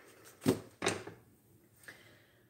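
Two sharp knocks about a third of a second apart as a utensil and butter strike the inside of an empty stainless steel stock pot, each briefly ringing off. A faint click near the end as the electric stove's burner knob is turned.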